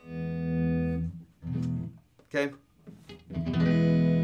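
Electric guitar strumming an open E major chord twice. The first strum rings for about a second, and the second comes just over three seconds in.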